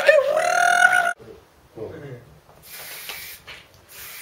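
A beatboxer holds one sung vocal note for about a second, sliding up slightly before it levels off, and it cuts off suddenly. Later comes a quieter hiss of an aerosol spray-paint can, in short blasts.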